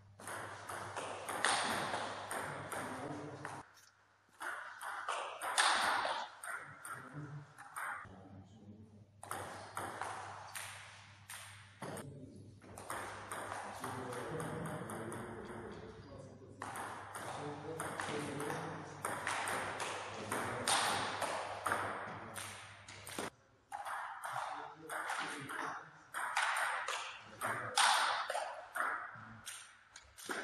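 Table tennis rallies: the celluloid-type ball clicking off the paddles and bouncing on the table in quick alternating strikes, in runs separated by short pauses between points.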